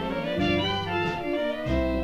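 A 1940 swing big band, with trumpets, trombones, saxophones and a rhythm section, playing a short instrumental passage between the vocal lines of a recorded song.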